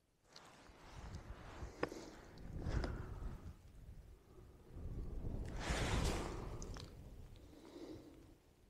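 Wind buffeting the microphone on an exposed summit: a low rumbling gust about three seconds in and a stronger one around six seconds, with a few faint clicks between.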